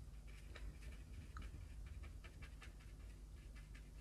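Faint, irregular soft taps of a paintbrush dabbing and stippling wet paint onto watercolour paper, over low room hum.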